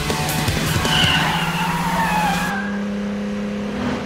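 Race-car engines running flat out with tyre squeal in the first half. The engine note holds steady and steps slightly higher about two and a half seconds in.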